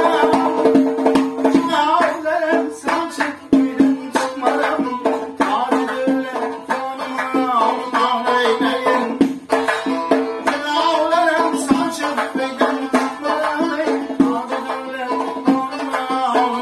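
Live Khorezmian folk music: a man sings to a long-necked plucked lute while a doira frame drum beats a quick rhythm with frequent sharp strokes.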